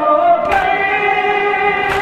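A group of men chanting a noha, the Shia lament for Muharram, in unison on a long held note that steps to a new pitch about half a second in. Two sharp slaps about a second and a half apart mark the beat, the hand strikes of matam (chest-beating).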